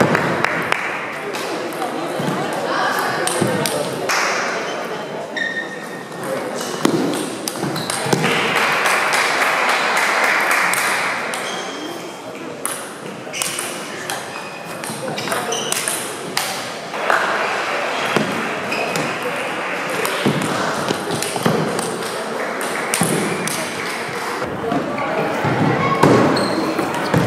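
Table tennis rallies: a celluloid-type ball clicking in quick succession off bats and table, over voices echoing in a sports hall.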